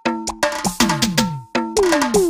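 Electronic DJ break loop playing back from FL Studio Mobile at 140 BPM. It is a quick run of pitched percussion hits with cowbell-like ringing tones, several notes sliding down in pitch, and a short gap about a second and a half in.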